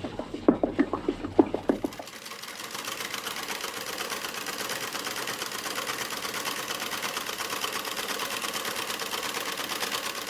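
Vintage black sewing machine stitching through a sheet of squared paper: from about two seconds in, a fast, even mechanical clatter of needle strokes that grows a little louder. It is preceded by a slower rhythmic low thudding during the first two seconds.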